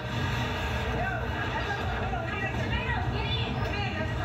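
Steady low rumble of wind and storm noise during a night tornado, with faint, indistinct voices and a music bed underneath.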